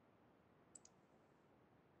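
Near silence, broken by two faint short clicks in quick succession a little before the middle.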